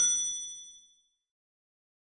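A bright, bell-like ding sound effect, ringing with several high tones and fading out within about a second, followed by silence.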